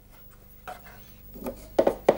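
Light rubbing and small knocks of hands working a wooden instrument body, fitting a thin purfling strip into its channel, starting after a quiet moment and growing louder toward the end.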